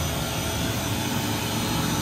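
Steady mechanical drone and hiss with a low hum, even throughout and without distinct clicks or knocks.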